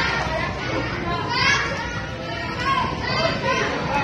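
A group of children's voices talking and calling out over one another, with no clear words standing out.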